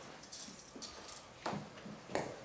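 A few footsteps on a hard floor, spaced about half a second apart.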